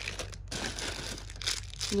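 Thin plastic bags crinkling as small bagged mochi squishies are handled and one is lifted out, in irregular rustles that are loudest about one and a half seconds in.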